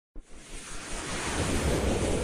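Rushing whoosh sound effect of an animated logo intro, swelling up from silence and growing steadily louder.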